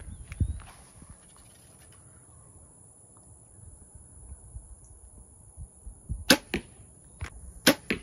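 Hoyt Alpha Max 32 compound bow being shot: after some quiet handling, two sharp loud cracks of the string and arrow on release come about a second and a half apart, each followed a fraction of a second later by a quieter snap.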